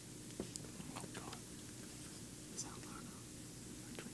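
Faint whispering of teenage quiz contestants conferring quietly over an answer.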